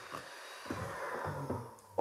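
Electric hand mixer beating cream cheese filling. Its thin motor whine slides down in pitch as the motor winds down, and the sound fades out near the end.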